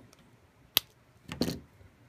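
Scissors snipping through thin craft wire: one sharp snip a little under a second in, followed about half a second later by a longer, duller second sound.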